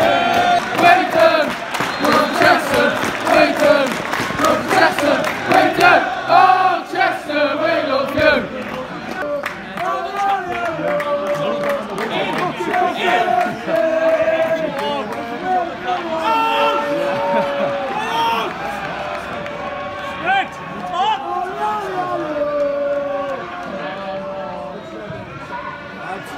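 Football supporters chanting and singing together, many voices in a loud chant that moves into long held sung notes partway through and eases off towards the end.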